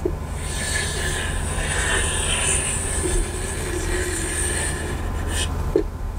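Chalk held in a chalkboard compass scraping across the board as a circle is drawn: a steady, scratchy sound lasting about five seconds, followed by a short knock near the end as the compass comes off the board.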